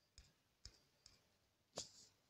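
Faint finger taps on a phone touchscreen, four short clicks spaced about half a second apart, the last one the loudest, as the on-screen arrow buttons are tapped.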